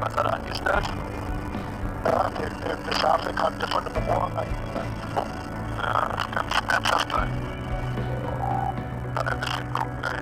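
Helicopter crew talking over the intercom through their headset microphones, over a steady low drone from the rescue helicopter's engines and rotor in the cabin, with background music.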